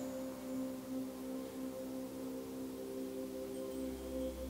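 Soft ambient background music: a steady drone of several held, overlapping tones with a singing-bowl character.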